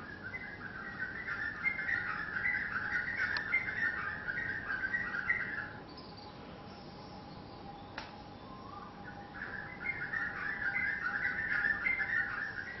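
A bird singing a fast run of high, chattering notes for about six seconds. It pauses, then starts again about nine seconds in, over a faint steady whine.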